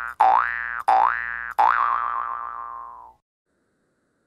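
A cartoon-style 'boing' sound effect: a pitched tone sliding quickly upward, repeated in quick succession about every two-thirds of a second, the last one wavering and fading out about three seconds in.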